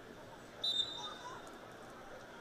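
Referee's whistle, one short sharp blast a little over half a second in, signalling the start of wrestling from referee's position at the opening of the second period, over low crowd voices.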